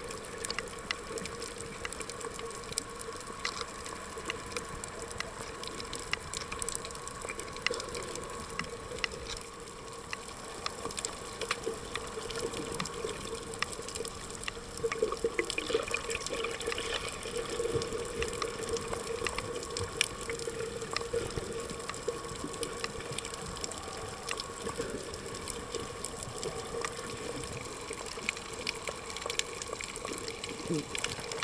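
Underwater sound picked up by a submerged camera over a coral reef: a steady wash of water with scattered sharp clicks and crackles, over a steady hum.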